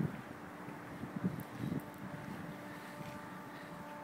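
Faint steady outdoor background noise with light wind on the microphone and a faint steady hum underneath.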